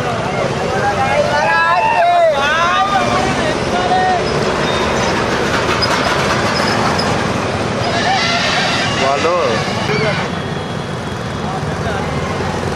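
Road traffic: trucks and motorbikes driving past close by, with people shouting over the engine noise, in loud bursts about a second in and again around eight seconds.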